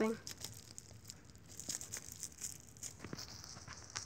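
Bubble wrap being squeezed and crumpled by hand: faint, scattered crinkles and small clicks, the bubbles not popping.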